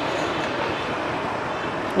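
Steady motorbike traffic noise on a city street, an even rumble with no single event standing out.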